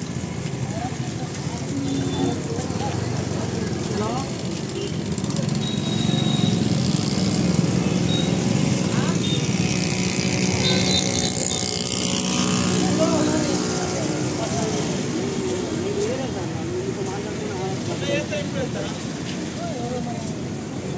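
Roadside street noise with a motor vehicle passing, louder through the middle and then fading, under scattered chatter of several men's voices.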